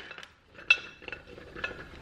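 Frozen meatballs dropping from a bag into a ceramic slow-cooker crock: one sharp, ringing clink a little under a second in, then a few lighter taps.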